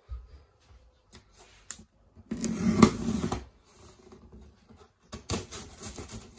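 Large cardboard box being handled as it is opened: a loud rustling scrape with a couple of sharp knocks a little over two seconds in, then more scrapes and knocks near the end.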